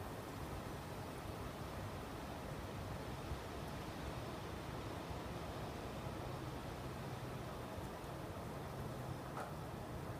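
Steady outdoor background noise, an even hiss with a faint low hum, with no distinct events.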